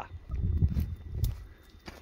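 Low, muffled rumble of footsteps and phone handling as the person filming walks over stony ground, dying down about one and a half seconds in.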